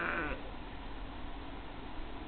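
The end of a sheep's bleat, one held call that stops about a third of a second in.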